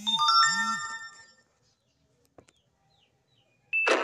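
Electronic chime sound effect: several bell-like tones ring together over two low swoops and fade out within about a second and a half. Music starts just before the end.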